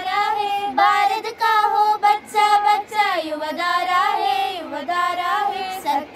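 A small group of schoolgirls singing a Hindi patriotic song together, unaccompanied, in held, wavering sung phrases with short breaths between them.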